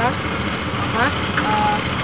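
A motor running steadily with a low, even rumble, with faint voices over it.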